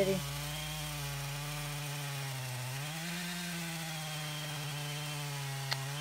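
Chainsaw running steadily while cutting a log, its pitch rising slightly about three seconds in.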